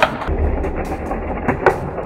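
Small toy car rolling across a tabletop, with a few sharp knocks near the start and end, under background music.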